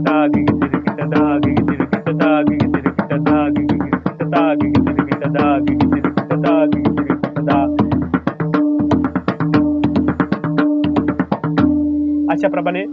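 Pakhawaj played with both hands in a fast, even stream of strokes, repeating a short sarpat phrase (dha-ghighi-tirakita, ta-ghighi-tirakita) over and over. Under it runs a melodic backing with a steady held drone note.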